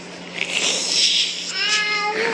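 A toddler vocalising: a breathy, giggling hiss, then a short, high-pitched squeal near the end.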